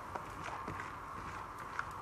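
Low, steady background noise with three faint, light taps spread through it.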